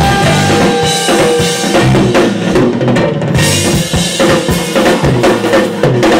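Drum kit played loud and hard in a live rock band, with bass drum, snare and cymbal hits to the fore and the band's amplified instruments sounding under them.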